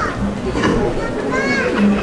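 High-pitched voices giving short calls that rise and fall, over a busy steady background of sound.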